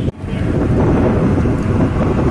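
Steady road traffic rumble with wind buffeting the microphone, after a brief dropout in the sound right at the start.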